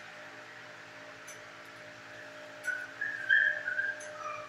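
A dog whining in a run of short high-pitched notes from about two and a half seconds in, over a steady background hum.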